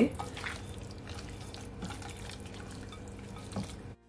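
Wet, squelching handling of raw chicken thighs as hands rub a wet marinade into the meat and under the skin, with many small sticky clicks and a light knock near the end.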